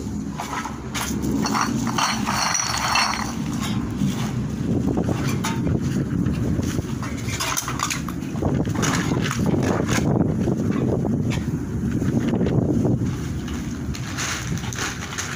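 Wind buffeting the microphone in a steady low rumble, with scattered rustling and clattering as a plastic sack and scrap cans and bottles are handled.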